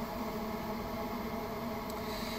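Steady low background noise with a faint hum and no distinct events.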